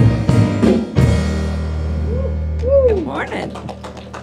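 A worship band ending a song: the last sung words, then a chord with a deep bass note held on the keyboard for about two seconds while a voice slides up and down over it, then fading away with a few faint sharp ticks near the end.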